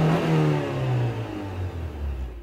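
A car engine, loud at first, holds one pitch and then drops lower in two steps as it fades away.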